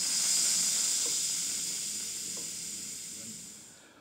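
Pressurised air hissing out through the release valve of a cooling-system pressure tester on the expansion tank, letting off the remaining pressure of about 11.5 psi. The hiss starts loud and fades away over about four seconds as the pressure drops.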